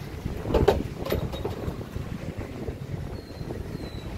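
Wind buffeting the microphone in a low, uneven rumble, with a couple of sharp knocks about half a second and a second in.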